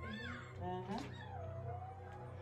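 A toddler's high-pitched squealing: one short squeal that rises and falls right at the start, and another about a second in that slides down and trails off.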